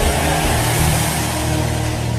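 A sustained low keyboard chord held steadily under the noise of a congregation praying aloud, the crowd noise slowly fading.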